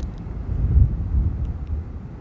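Wind buffeting a handheld microphone: an uneven low rumble that rises and falls.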